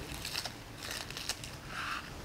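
Dry, papery onion skin crackling as it is peeled off a halved onion by hand.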